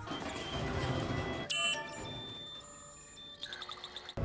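Electronic security-lock beeps and tones from a code keypad and face-recognition scanner: single synthetic tones from about a second and a half in, then a quick run of short beeps near the end, over a quiet music score.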